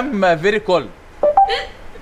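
Mercedes voice assistant answering its wake word through the car's speakers: a synthetic voice finishes "how can I help?", then a short rising two-note electronic chime about a second and a half in, the signal that it is listening.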